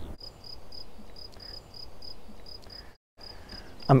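A cricket chirping steadily, about four short high chirps a second, over a faint low outdoor rumble. Near the end the sound cuts out completely for a moment, and then the chirping goes on.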